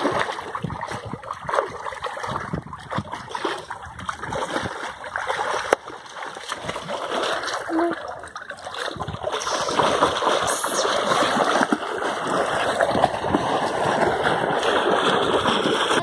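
Water splashing and churning as a child swims and kicks in a small above-ground frame pool. The splashes are irregular, then grow louder and steadier in the second half.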